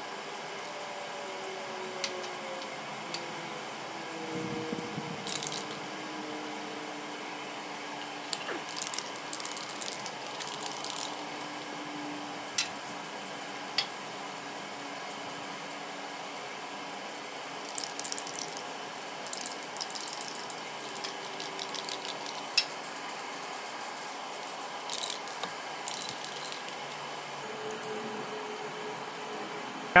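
Aerosol spray can of chassis paint hissing in short, irregular bursts over a steady faint background hiss.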